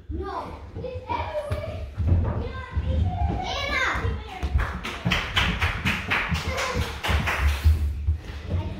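Children's voices, unclear and excited, with a quick run of taps and thumps, about five a second, through the second half.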